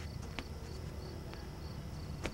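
Crickets chirping steadily in short, evenly repeated high pulses over a low background hum. There is a sharp click under half a second in and a fainter one just past the middle.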